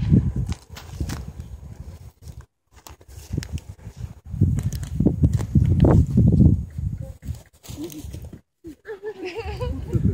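Gusty wind buffeting the microphone, coming in irregular low gusts that are strongest around the middle and drop out briefly twice.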